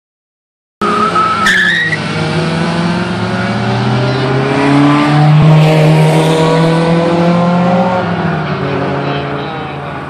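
Car engines revving hard during a street race, with a brief high rising squeal near the start that is typical of tires spinning. The engine sound peaks about halfway and fades near the end as the cars pull away.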